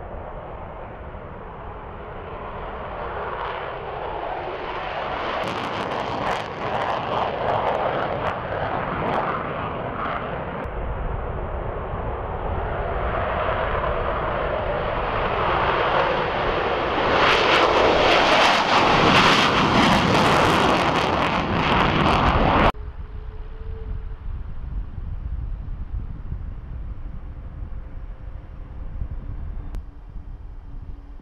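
F-22 Raptor's twin Pratt & Whitney F119 jet engines at takeoff power, growing louder over the takeoff run with a crackling edge and loudest around liftoff. The sound cuts off suddenly about three-quarters of the way through, leaving a quieter steady rumble.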